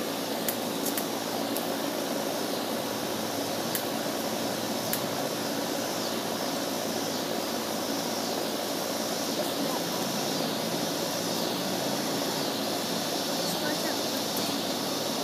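Steady, even running noise of an outdoor air-conditioner condenser unit, with a few faint high clicks in the first five seconds.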